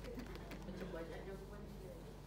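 An indistinct voice murmuring in the background, no words made out.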